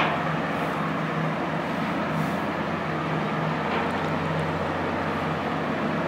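The tug's diesel engines running steadily as the tug-barge passes close by: a steady low drone over a steady hiss, with a brief click at the very start.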